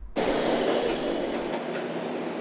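Steady street traffic noise from an open outdoor microphone, cutting in suddenly just after the start.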